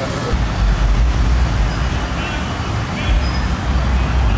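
Busy city street traffic: the engines of a minibus taxi and motorcycles run close by, under a steady wash of road noise, with a deep rumble setting in shortly after the start.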